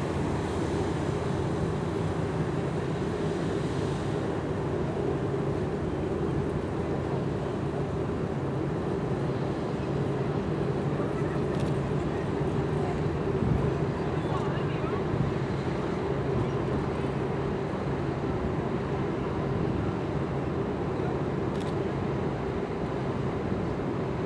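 Ship machinery running in a steady low drone, with a few held low tones that do not change.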